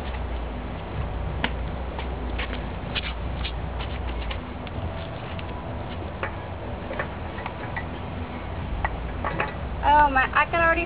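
Water dripping from the drain hole of a terracotta pot of soaking wood ash: irregular light ticks as the drops land, over a low wind rumble.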